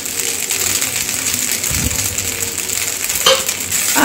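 Rice frying in a metal kadai with a steady sizzle. There is a dull bump about halfway through and a sharp metal click near the end, like a spatula knocking the pan.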